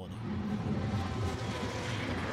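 Steady outdoor background noise: an even low rumble with hiss, with no distinct events.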